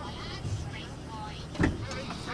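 A helicopter's engine and turning rotor give a steady low hum with a rhythmic beat as it sits on the pad before takeoff. A single sharp knock comes about a second and a half in.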